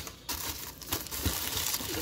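Tissue paper and plastic snack wrappers rustling and crinkling as a hand rummages in a cardboard box, with a few short knocks among them.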